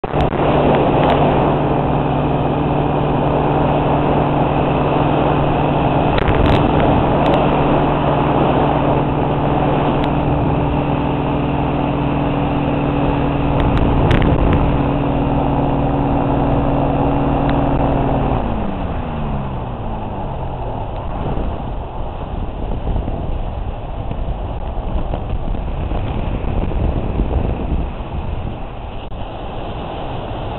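Ultralight trike's engine running steadily in flight, then about eighteen seconds in it is shut off and its pitch falls away over a couple of seconds as it winds down, leaving only the rush of airflow: the start of an engine-off glide to landing.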